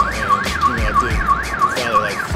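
Electronic siren in its fast yelp, sweeping up and down about three times a second, over a music beat with a kick drum.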